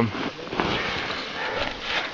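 A shovel digging into deep snow around a buried tent: a steady rough scraping for most of the two seconds.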